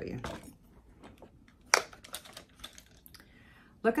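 Makeup brushes clicking and rattling together in a handmade ceramic brush holder as it is picked up, a run of light clicks with one sharper knock just under two seconds in.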